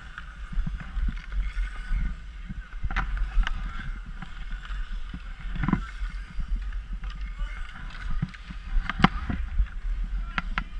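Hockey skates carving and scraping on outdoor ice, with wind rumbling on the microphone. A few sharp clacks of hockey sticks and pucks on the ice come through, two close together near the end.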